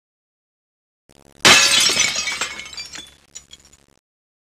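Glass-shattering sound effect: a sudden crash about a second and a half in, dying away over the next second or so into a few scattered tinkles of falling fragments.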